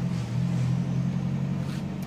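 Steady low mechanical hum.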